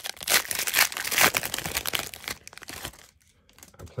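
Foil trading-card pack wrapper being torn open and crinkled by hand, a busy crackling for about two and a half seconds that then stops.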